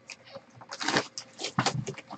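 Hands handling a shrink-wrapped trading-card box: plastic wrap crinkling and cardboard rubbing in a run of short rustles. The rustles begin about two-thirds of a second in.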